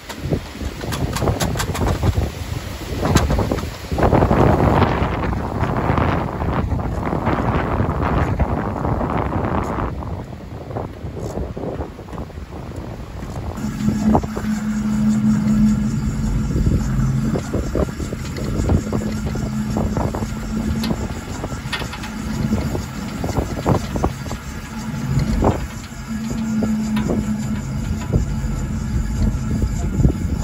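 Gusty wind buffeting the microphone in surges under a spinning vertical-axis wind turbine. About halfway through, the sound changes to a steadier rush with a low hum that comes and goes, and a few clicks.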